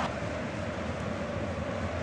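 Steady stadium crowd noise from a large football crowd, an even wash of sound with no single event standing out.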